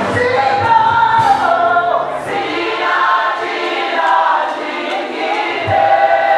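Gospel praise song sung by a choir and congregation, with long held notes. The low beat of the backing band drops out about two seconds in, leaving the voices.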